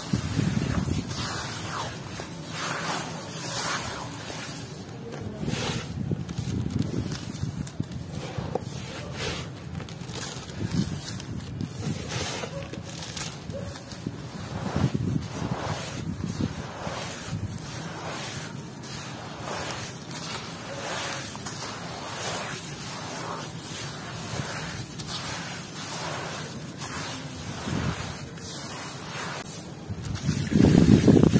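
Hands squeezing and crumbling wet, gritty mud in a bucket of water: irregular squelches, splashes and grainy crunches as crumbs drop into the water.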